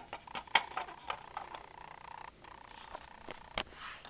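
Light clicks and taps of plastic model locomotive shells being handled and set down, with a faint steady hum behind them. The sharpest click comes near the end.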